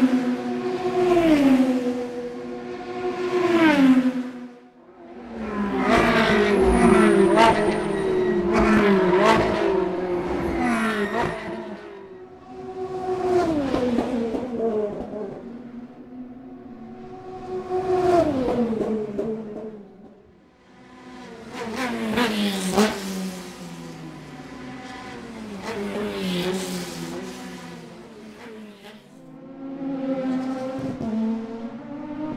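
A montage of race car engines at high revs, passing one after another. Each engine note holds high and then drops sharply as the car goes by. About five to twelve seconds in, and again after twenty seconds, several cars overlap.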